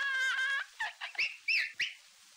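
A man's high-pitched falsetto squeal, held steady for about half a second, then four or five short squeaky chirps that rise and fall in pitch.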